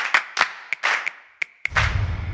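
A quick, uneven run of about eight short clap-like hits and clicks, some with a brief ringing tail, from an animated title card's sound effects. Near the end a loud, low bass-heavy music sound comes in.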